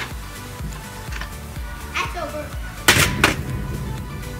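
Background music with a steady beat; about three seconds in, two sharp knocks close together as a flipped plastic water bottle lands.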